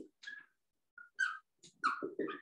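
Whiteboard marker squeaking in several short strokes as a word is written on the board.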